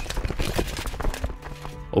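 Sound effect of horses' hooves clip-clopping in rapid, uneven beats, a mounted army on the move, over quiet background music.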